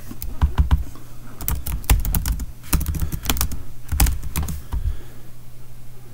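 Typing on a computer keyboard: keys clicking in several quick bursts with short pauses between them, stopping about five seconds in.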